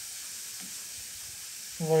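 Steady background hiss of the recording, even and mostly high-pitched, with no other sound in it. A man's voice starts a word near the end.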